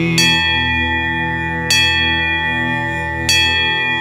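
A musical bell struck three times, about a second and a half apart, each strike ringing on, over a steady musical drone.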